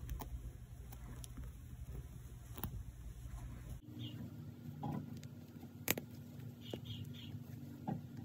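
Faint handling noise of fingers working a crocheted yarn toy, with a few small sharp clicks scattered through it.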